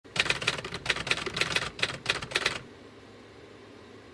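Typewriter keystroke sound effect: a rapid, uneven run of key clicks that stops about two and a half seconds in, leaving faint hiss.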